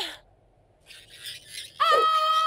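A young woman's voice lets out a loud, long, held shout near the end, dropping slightly in pitch at its onset and then holding one high note. Before it there is a short silence and a few faint breathy sounds, and a wavering cry cuts off right at the start.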